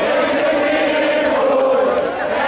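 A crowd singing along in chorus with a live band, many voices holding long notes together.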